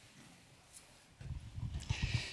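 Quiet hall tone. About a second in, low irregular thumps and rustling come from a handheld microphone being handled.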